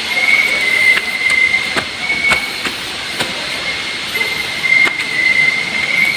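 A steady high-pitched whine that wavers slightly in pitch, with a few soft knocks scattered through it.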